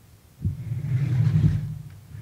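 Microphone handling noise: a low rumble as a table microphone on its stand is grabbed and moved into position. It starts suddenly about half a second in and fades out near the end.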